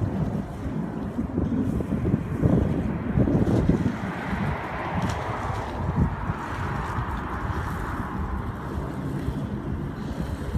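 Wind buffeting the microphone over the running of a Prestige 450's Volvo Penta IPS 600 diesel pod drives as the yacht is manoeuvred into its slip by joystick. A rushing hiss of churned prop-wash water swells about four seconds in and fades near the end.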